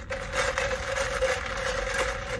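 Iced drink being sucked up through a plastic straw: a steady airy sipping sound lasting about two seconds, with a faint steady hum underneath.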